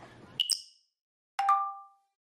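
Two short chime sound effects: a high, bright ping about half a second in, then a lower ding about a second and a half in, each ringing out and fading quickly.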